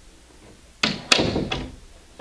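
Interior door worked by its knob: the knob and latch clatter and the door knocks in three sharp strokes about a second in, the middle one the loudest.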